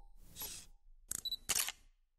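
Logo-sting sound effects: a short whoosh, then a camera-shutter sound of two quick clicks in the second half.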